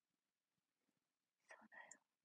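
Near silence, then a faint whisper from a young woman near the end.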